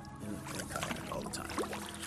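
A stream of urine splashing steadily into flat water beside a kayak, heard quietly.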